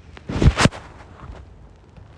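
A brief muffled burst of noise about half a second in, with two quick peaks close together, then only low background hiss.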